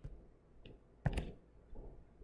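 A stylus tapping and scratching on a tablet while handwriting a word: a few light clicks, the sharpest about a second in.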